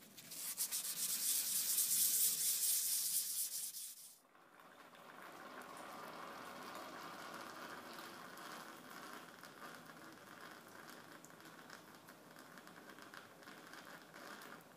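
A small metal part rubbed by hand on sandpaper over a flat surface, in rapid back-and-forth strokes for about four seconds, then stopping suddenly. After that, a much quieter steady hiss.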